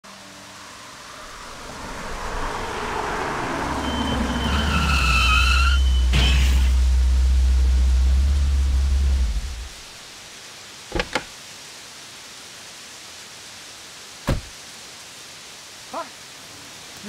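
A car braking hard in the rain: a falling engine note, a tyre screech, then a sharp thump about six seconds in as it strikes a pedestrian, all over a deep low rumble. After that, steady rain with a few sharp knocks.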